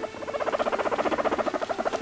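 Guinea pig making a rapid pulsing 'drrr' rumble while being stroked on the head, growing louder over the first second and then holding. It is the pig complaining, a sign of annoyance at being touched.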